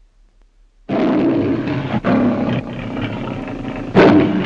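The MGM trademark lion roaring: a sudden loud roar about a second in, a brief break near the middle, then further roars, over a faint low hum from the old soundtrack.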